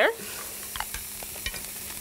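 Shrimp sizzling steadily in a skillet, with a few faint clicks.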